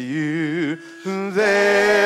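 Church praise team singing into microphones: several voices holding long notes with vibrato. The singing drops away briefly about a second in, then comes back louder.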